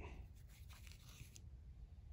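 Near silence: room tone with a low hum, and faint rustling during the first second and a half.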